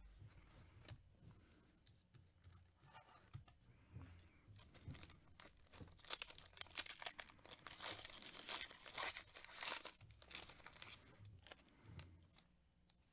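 Plastic trading-card pack wrapper being torn open and crinkled by hand: a faint string of quick rips and crackles, thickest in the middle and later part.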